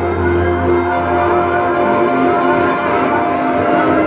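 Live lap steel guitar played with a slide bar, notes gliding up and down over sustained electric guitar, with a deep low note held through the first second or so.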